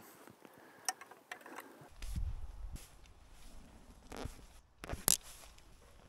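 Faint scrapes and sharp clicks of carbon arrows being pulled out of a foam block target, the sharpest about five seconds in, with a brief low rumble about two seconds in.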